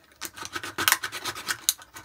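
A thin plastic drinks bottle being cut up by hand, the plastic crackling and scraping in quick irregular snips.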